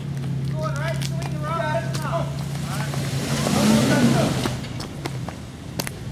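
Jeep engine running steadily at low revs, heard at a distance. A rush of hissy noise swells and fades about four seconds in.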